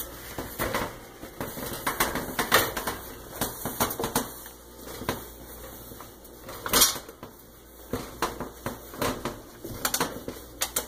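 A cloth wiping and rubbing over a freshly polished stove top and its control panel, with irregular light clicks and knocks as the hand works; the loudest knock comes a little before seven seconds in.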